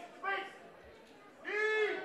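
Two short shouts from people watching the fight: one just after the start and a longer one about a second and a half in, over low crowd noise.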